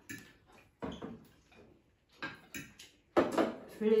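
Forks clinking and scraping on ceramic dinner plates during a meal, a few separate short clinks, with a voice starting near the end.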